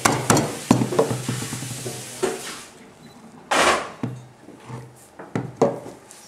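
Metal meat mallet striking amaretti cookies wrapped in a cloth towel on a wooden table to crush them: several quick knocks in the first second, then a few slower ones, a brief rustling noise about three and a half seconds in, and two more knocks near the end.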